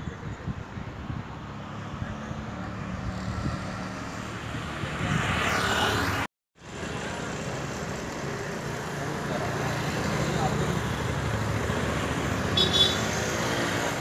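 Street traffic noise with a vehicle passing about five to six seconds in. The sound cuts out for a moment just after six seconds, then steady traffic noise with a low engine hum resumes.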